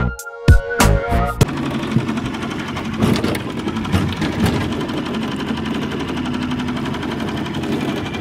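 Music with a beat cuts off about a second and a half in, giving way to a small boat motor running steadily while trolling.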